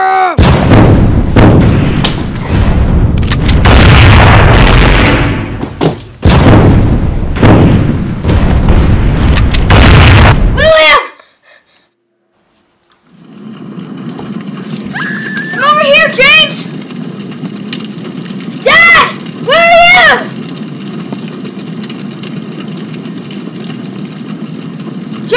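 Explosion sound effects: a run of loud, long blasts over the first eleven seconds. After a short silence comes a steady hissing fire with a few high, wavering cries over it.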